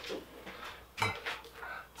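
Faint handling noise from the homemade air-hose nozzle and hose: a light click at the start, then a few soft knocks and clicks about a second in, over quiet room tone.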